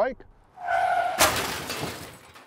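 Comedic crash sound effect: a steady tone over a rush of hiss for about half a second, then a loud crash of shattering glass that fades out.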